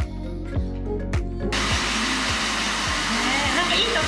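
Handheld hair dryer blowing, cutting in abruptly about a second and a half in and running on steadily, over background music with a steady beat.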